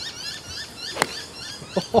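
A single crisp strike of a 7-iron hitting a golf ball off the tee, about a second in, over steady chirping of birds.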